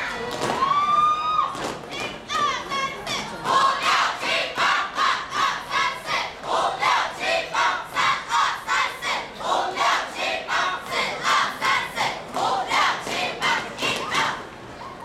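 A large group of young voices yelling in unison, a few drawn-out, gliding yells at first, then a regular chant of short shouts at about two a second.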